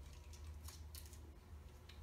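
A few faint, sharp crackling clicks from hands handling the communion bread or its packaging, over a low steady room hum.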